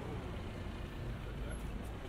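Street ambience: steady road-traffic noise with a low rumble from passing vehicles.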